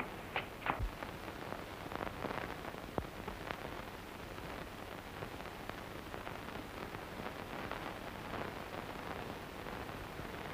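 Steady hiss of an early-1930s film soundtrack with no dialogue. A few faint knocks come in the first second, and two more come around three seconds in.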